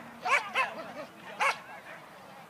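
Small dog barking: two quick barks, then another about a second later.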